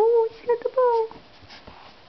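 Yorkshire terrier puppy whining: three short high-pitched whines in the first second or so, the first rising in pitch.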